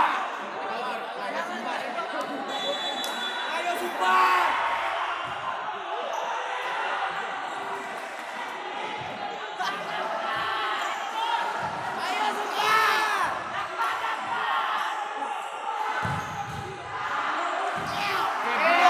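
Futsal ball being kicked and bouncing on an indoor court, under a steady hubbub of crowd chatter and shouts, with a loud shout about two thirds of the way in. The hall echoes.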